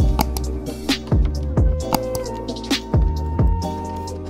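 Background music with a beat: held notes over recurring low drum hits.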